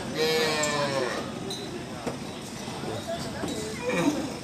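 A young calf bawling: one long, high, bleat-like call of about a second near the start, falling slightly in pitch, over background talk.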